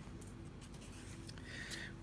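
Faint rustling of fabric tape being handled and laid against a card backing, over a low room hum.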